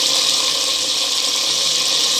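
Chicken frying in oil with onion-tomato masala in a clay pot, giving a steady, even sizzle.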